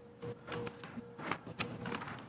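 Quiet courtroom room noise: a faint steady hum with scattered light taps and clicks, several of them through the stretch.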